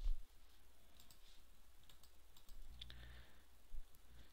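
A few faint, scattered clicks from working a computer's controls while code is copied and the editor window is switched, over a low steady hum.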